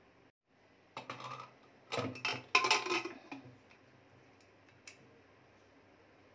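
Aluminium pressure cooker lid being put on and closed: a short metal scrape about a second in, a cluster of clinks and knocks between two and three seconds, and a small click near five seconds.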